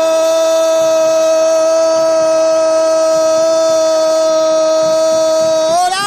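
A radio football commentator's long goal cry, one shout held at a steady high pitch for nearly six seconds, lifting briefly just before it ends.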